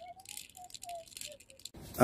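Plastic pecking-chicken toy gun clicking and rattling quietly as its trigger is squeezed, making the two toy roosters peck in a quick series of light clacks.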